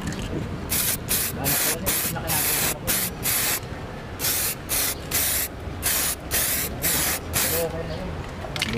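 Aerosol spray can of Samurai metallic black paint hissing in about a dozen short bursts of a fraction of a second each, with brief gaps between them, as a coat is laid onto a plastic scooter fairing.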